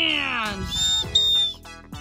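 Two short, steady, high-pitched whistle blasts about half a second apart, following a long falling exclamation from a voice. Background music plays underneath.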